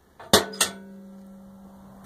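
Metal struck twice in quick succession, a clink then a second knock, followed by a steady ringing tone that slowly fades.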